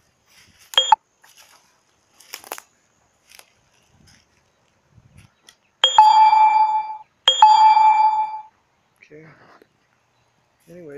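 Two loud, identical ringing dings about a second and a half apart, each starting sharply and ringing for about a second before fading. A shorter, fainter ding comes near the start.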